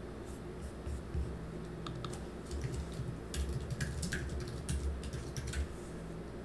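Typing on a computer keyboard: irregular key clicks, a few at first, then a quick run of keystrokes in the second half as a field label is typed in.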